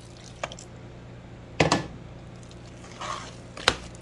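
Warm milk poured into a pan of boiled potatoes, then a hand potato masher working them, with soft wet squishes. A single sharp knock comes a little under two seconds in, with a few light clicks, over a faint steady hum.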